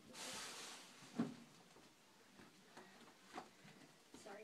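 Faint rustling over the first second, then a sharp knock about a second in and a softer knock near three and a half seconds: someone moving about the room and handling things while fetching shoes.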